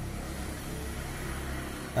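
Steady low background hum, with faint scratching of a pen writing on paper.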